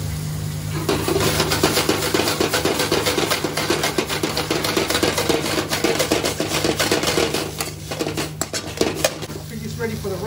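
Prawns and vegetables sizzling in a hot wok with dark soy sauce, a metal spoon stirring and scraping against the pan. The sizzling and scraping start about a second in and thin out near the end, over a steady low hum.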